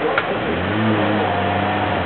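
Off-road truck's engine revving up about half a second in, then holding steady under load as the truck pulls through deep mud.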